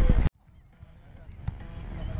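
Wind on the microphone with outdoor background, cut off abruptly about a third of a second in. Near silence follows and slowly fades back up, with one sharp knock about a second and a half in.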